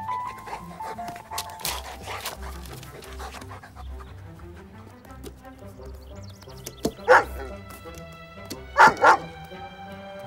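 Background film score music plays throughout. A golden retriever barks three times over it, loudly: once about seven seconds in, then twice in quick succession near nine seconds.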